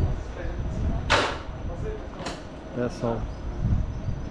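Chairlift top station with its cable bullwheel turning, a steady low rumble under everything. About a second in there is a short, sharp whoosh, and a fainter one about two seconds in, as a loaded chair is sent off along the steel cable.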